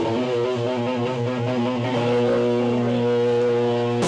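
Live band's amplified electric guitar and bass guitar holding sustained, ringing notes and chords without a drumbeat, with a cymbal crash right at the end.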